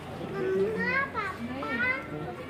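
Indistinct voices of people nearby, with a high-pitched voice calling out in rising and falling pitch from about a second in.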